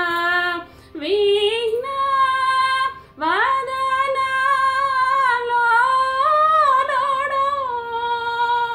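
A woman singing Carnatic vocal music solo in raga Saramati. She holds long notes ornamented with bends and oscillations, breaking for two short breaths, under a second in and about three seconds in.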